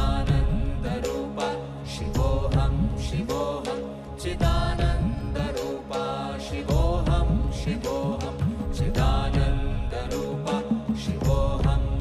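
A group of women's voices chanting a devotional mantra in a sliding melody, over a steady drone and low strokes on large hand drums.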